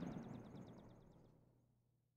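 The reverberating tail of a pistol shot dying away, fading to silence about a second and a half in, with a rapid run of short high chirps over it.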